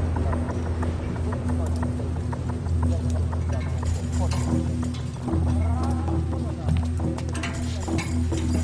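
Film soundtrack: a steady low music drone under many quick footfalls and knocks as people run and vault over a rooftop wall.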